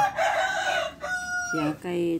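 A rooster crowing: a rough, raspy first part for about a second, then a clear held note that breaks off.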